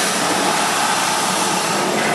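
Large horizontal stationary steam engine running, a steady mechanical noise with no distinct beat.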